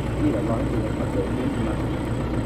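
A man talking over a steady low drone from an idling engine.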